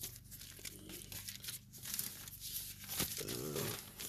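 Faint, irregular rustling and crinkling of paper Bible pages being leafed through to find a verse, with a brief low murmur near the end.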